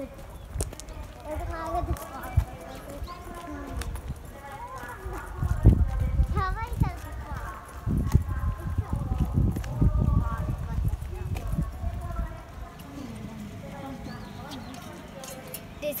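People talking as they walk, with low rumbling bursts between about five and twelve seconds in.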